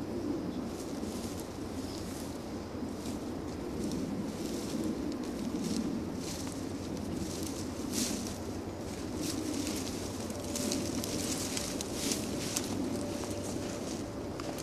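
Footsteps and rustling through leaves and brush outdoors: irregular short crunches and crackles over a steady low background hiss.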